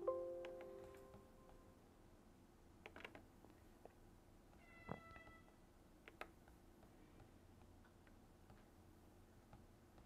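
Near silence, broken by a fading electronic tone at the very start, a short beep with a click about five seconds in, and a few faint clicks.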